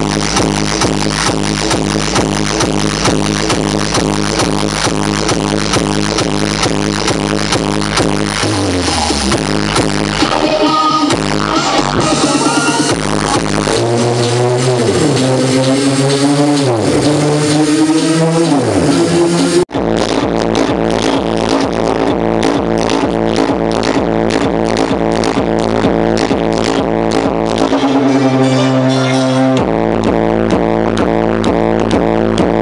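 Loud electronic dance music played through a DJ street sound system, with a steady beat. About eight seconds in the bass drops out for a build-up of rising sweeps; the sound cuts off for an instant just before twenty seconds and the full beat comes back, and the bass drops out again briefly near the end.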